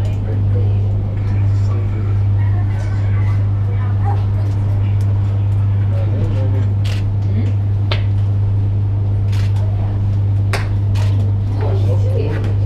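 A loud, steady low hum, with faint voices and a few short clicks over it.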